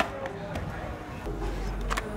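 Quiet, muffled voices over outdoor background noise, with a short sharp tap just before the end.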